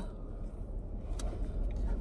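Low steady rumble of a car interior, with a few faint ticks about halfway through.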